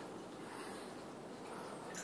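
Faint rustling of a small shaggy dog rolling and squirming on its back on a tile floor, in an otherwise quiet room.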